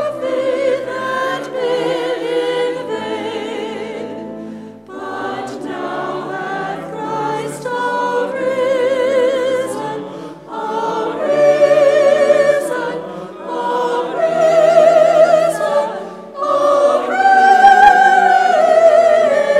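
Choir singing a hymn at the offertory, in sustained phrases a few seconds long with short breaks between them.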